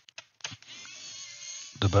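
Pen-style electric screwdriver starting about half a second in and running steadily with a thin, high motor whine as it unscrews a screw from a laptop's plastic bottom case.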